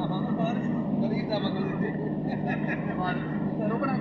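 Car driving on a motorway, heard from inside the cabin: a steady low drone of engine and road noise, with people talking over it.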